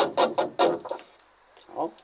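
Speech only: a voice in quick, evenly paced bursts for about a second, a short pause, then a brief "ja" near the end.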